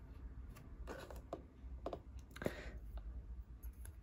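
Small LEGO model being handled in the fingers: a handful of faint, scattered clicks and taps of plastic bricks.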